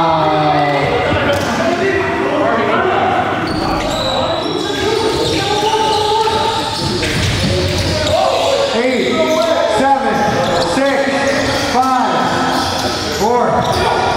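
Live basketball play in a gymnasium: a ball dribbled on the hardwood floor, with players' voices calling out and echoing around the hall.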